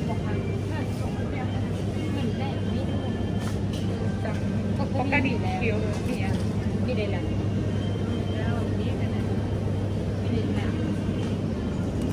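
Supermarket background: a steady low hum, with faint voices of other people.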